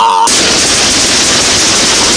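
Loud, rapid, steady rattling from something whirling and clattering in a metal bowl. It starts abruptly a moment in, cutting off a voice.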